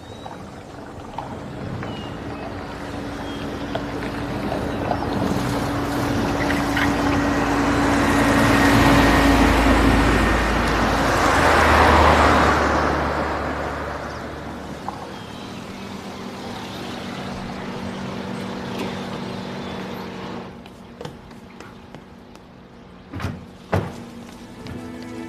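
A car driving past on paving. Its engine and tyre noise swells to its loudest about twelve seconds in, then fades away. A couple of short knocks come near the end.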